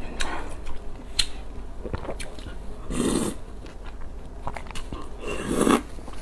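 Close-miked eating sounds of a person chewing and biting, with small mouth clicks, and two longer, louder slurps about three seconds in and near the end.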